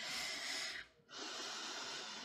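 A woman taking slow, deep breaths: one long airy breath, then after a brief gap a second, longer one.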